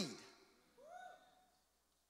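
Near silence in a pause in a man's speech. About a second in there is one faint, short hum-like vocal sound that rises in pitch and then holds level.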